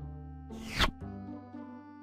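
A short whoosh sound effect falling quickly from high to low, about two-thirds of a second in, marking a slide transition over steady background music.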